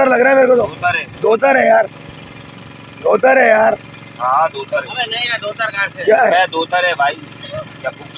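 Men's voices talking in short bursts over a steady engine hum.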